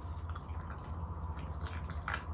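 Close-miked wet, sticky eating sounds of grilled chicken: scattered soft clicks and squishes over a steady low hum.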